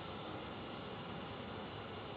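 Faint steady hiss with no distinct sounds: room tone.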